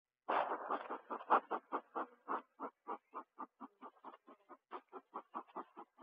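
Bellows of a bee smoker being pumped, giving a quick, even run of short puffs at about four a second as smoke is puffed over the top of an open hive to calm the bees.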